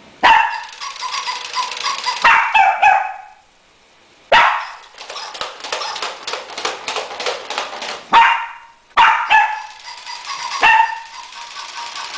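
Barking in three long bursts of several seconds each, thick with rapid clicking.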